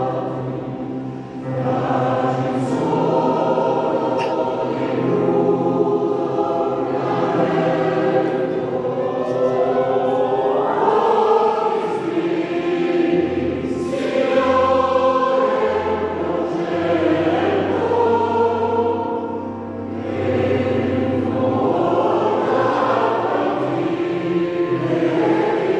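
Mixed choir of men's and women's voices singing in parts in a church, holding sustained chords that move from one to the next, with brief dips in loudness about a second and a half in and again near twenty seconds.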